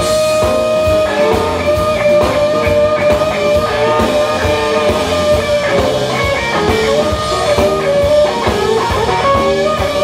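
Live electric blues band playing: an electric guitar leads with a long held note at the start, then shorter phrases, over bass guitar and a drum kit.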